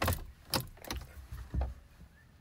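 A pickup truck's gear shifter being moved back into park inside the cab: about four short clicks and clunks spread over two seconds.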